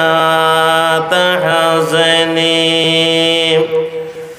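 A man's voice chanting a sermon melodically into a microphone, holding one long, steady note with a brief dip about a second in, then breaking off near the end.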